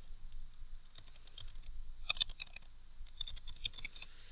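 Faint computer keyboard typing: a few scattered key clicks, with a short quick run of keystrokes about halfway through as a single word is typed.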